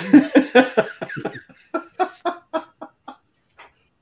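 Men laughing hard in short rhythmic bursts that thin out and fade towards the end.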